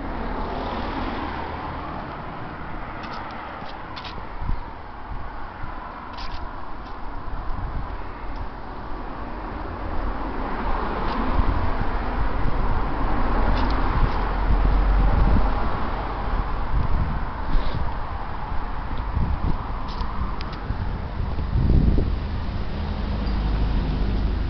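Road traffic noise: cars passing on a nearby road as a steady rush that swells and fades, loudest about halfway through and again near the end.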